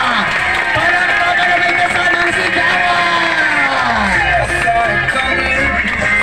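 A song with a sung melody playing over loudspeakers, with crowd noise and applause from the guests.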